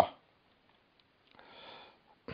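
A person's short, faint sniff about one and a half seconds in.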